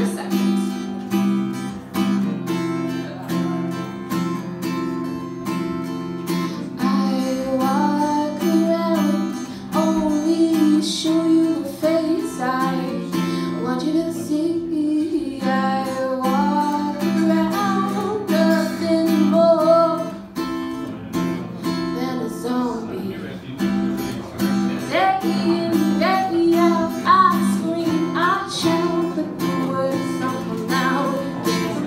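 Acoustic guitar strummed in a slow song intro. A woman's voice joins about seven seconds in, singing without words over the chords.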